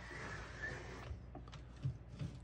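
Typewriter carriage of a 1954 Underwood Universal sliding freely across on its rails with the carriage release held, a soft smooth running hiss for about a second that fades out, followed by a couple of light clicks.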